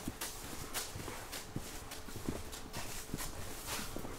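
Footsteps on a hard tiled corridor floor, a walking pace of about two steps a second.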